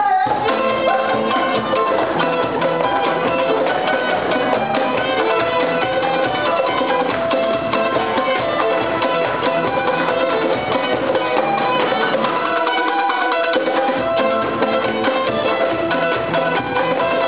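A fast Balkan-style folk tune played live on acoustic instruments: violin carrying the melody over acoustic guitar strumming and a quick, steady cajón beat.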